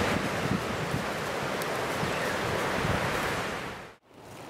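Footsteps walking through dry fallen leaves, a steady rustling with irregular low footfalls, under a rushing wind-like noise.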